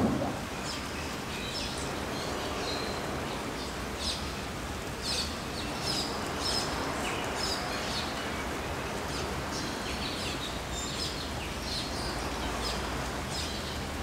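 Birds chirping now and then, short high calls scattered throughout, over a steady hiss of outdoor background noise.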